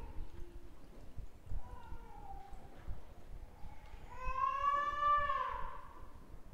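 High-pitched wailing cries: a short one falling in pitch about two seconds in, then a longer, louder one about four seconds in that rises slightly and then falls.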